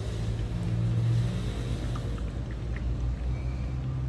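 A sesame oil press (chekku) running, giving a steady low mechanical hum and rumble that swells a little about a second in, while pressed oil streams into a steel pot.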